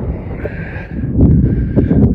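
Wind buffeting a phone microphone, a heavy low rumble that swells about a second in, with a few light knocks of the phone being handled.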